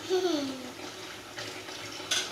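A young child's short voiced sound, falling in pitch over about half a second at the start, over a steady background hiss.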